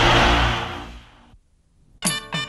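Production-company logo sting: a loud rushing noise over low held bass notes, fading away over the first second and a half into near silence.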